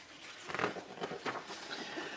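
Paper instruction booklet pages rustling and crackling as they are handled and turned, a string of short, uneven rustles.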